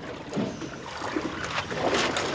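Sea water lapping and trickling against the hull of a small fishing boat, with faint voices in the background.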